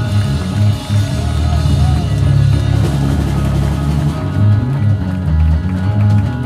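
Live rock band playing: electric guitars over bass and a drum kit, loud and continuous.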